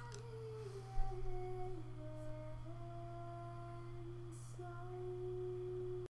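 A man humming a slow tune with his lips closed around a pipe stem, long held notes stepping up and down in pitch, over a steady low electrical hum.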